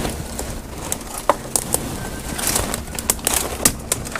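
Dry leaves and dead twigs crackling and rustling as a metal pipe is pushed and poked down into brush, with irregular sharp clicks and snaps.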